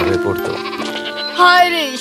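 A bleat from a farmyard animal, a single wavering call about one and a half seconds in, lasting about half a second, over background music with steady held notes.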